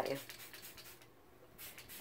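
Faint, short scratchy hisses of a pump spray bottle misting hair product onto damp hair: a run of them in the first second and another near the end.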